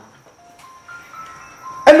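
A faint, simple electronic melody of a few single plain notes under a thin high steady tone. A man's voice comes in loudly near the end.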